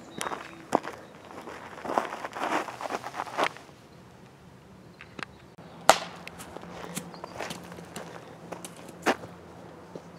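Croquet mallet striking a croquet ball: one sharp crack about six seconds in, with a second, lighter knock near the end. Scattered scuffs and taps come before it.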